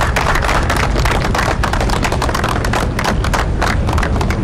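Crowd applauding: a dense, irregular patter of many hand claps over a steady low rumble.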